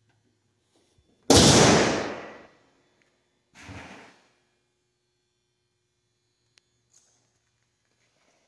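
The hood of a 1970 Dodge Dart Swinger slammed shut: one loud bang that rings on for about a second, then a quieter second thump about two seconds later.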